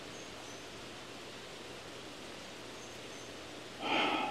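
Steady hiss of heavy rain falling around a porch. A bird gives faint, short, high two-note chirps twice, and a brief louder breathy sound comes right at the end.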